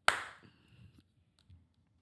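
A single sharp hand clap, ringing briefly in the room.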